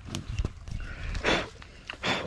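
Leaves and undergrowth rustling and scuffing as a person moves through them carrying cut banana leaves, with a few light knocks and one louder rustle a little past the middle.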